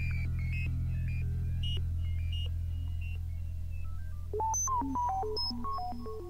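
Electronic synthesizer music: a steady low drone underneath short, scattered bleeping notes that leap widely in pitch, turning busier and louder in the middle register in the last couple of seconds.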